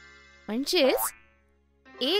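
A sustained musical chord fading out, then about half a second in a short cartoon sound effect lasting about half a second, its pitch dipping and rising again. After it the sound dies away almost to silence.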